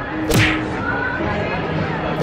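A quick whip-like whoosh sound effect about a third of a second in, sweeping down from a hiss to a low thud, over steady background noise.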